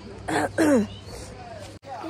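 A young woman clears her throat once, ending in a short falling vocal sound; the sound cuts off abruptly near the end.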